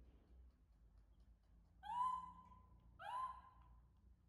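Baby monkey giving two drawn-out calls about a second apart, each rising quickly and then held at one pitch for about a second: calling for its mother.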